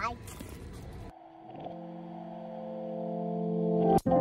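Background music added in editing: after a child's shouted "bye" over outdoor noise, the sound cuts at about a second in to a held chord that swells louder to the end.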